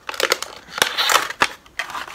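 Plastic packaging of a hair chalk crackling and snapping as it is handled, in a run of irregular sharp crackles.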